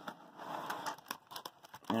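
Foil hockey card packs rustling and crinkling as they are pulled from an opened cardboard retail box, followed by a few light ticks of handling.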